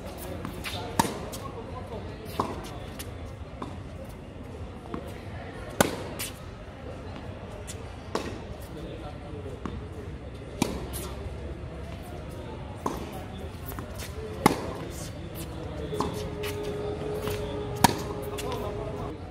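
Tennis ball struck by racquets and bouncing on a hard court during a rally: sharp pops every one to two seconds, the loudest about six and fourteen and a half seconds in. A steady tone joins near the end.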